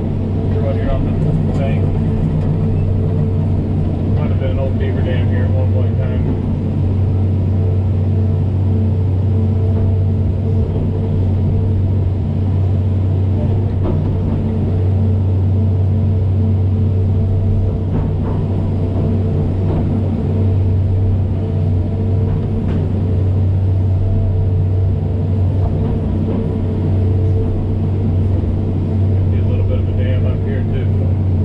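Diesel engine of a John Deere tracked excavator running steadily under working load as its hydraulics drag the bucket through creek mud, heard from inside the cab. A few short clanks and rattles come in the first several seconds.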